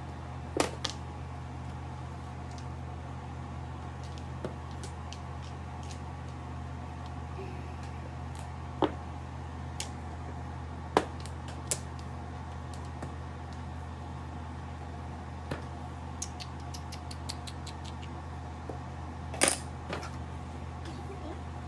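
Mahjong tiles clacking as they are set down and discarded on the table, single sharp clicks a few seconds apart with a quick run of small ticks near the end, over a steady low hum.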